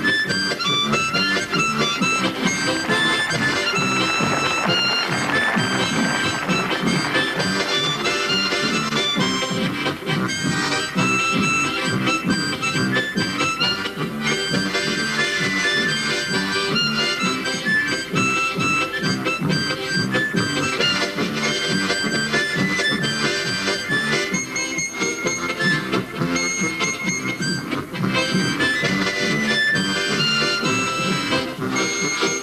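Harmonica trio playing a lively folk tune: a melody line of held and moving reed notes over an evenly pulsing low accompaniment from large chord and bass harmonicas.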